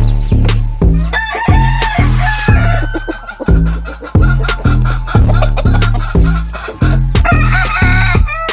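A gamefowl rooster crowing about a second in, the call lasting around three seconds, and calling again near the end, over music with a heavy, steady bass beat.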